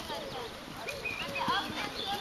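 Horse trotting on grass, its hoofbeats faint, under quiet talking.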